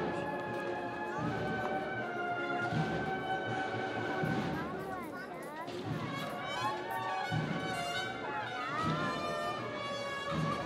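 A Spanish Holy Week cornet-and-drum band (banda de cornetas y tambores) playing a processional march: held cornet chords over drum beats, with a few sliding cornet notes.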